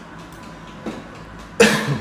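A man coughs once, loud and short, near the end; before it there is only faint background hum.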